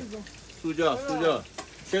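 A person speaking, with a faint steady hiss underneath.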